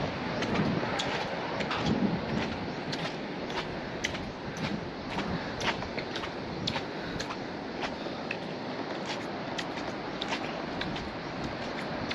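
Footsteps on a glass walkway floor, sharp irregular clicks about one or two a second, over a steady background hiss.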